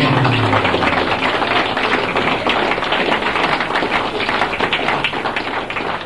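Live audience applauding between songs. The last notes of the music die away in the first second.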